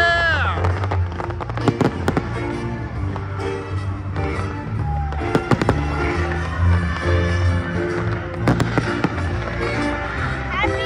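Fireworks bursting over loud live concert music from the stage's sound system, with pairs of sharp bangs about two, five and a half and eight and a half seconds in.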